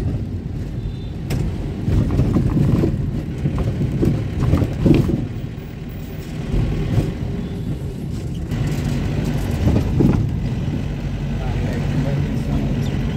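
Engine and road noise of a moving car heard from inside, a steady low rumble with a faint engine hum.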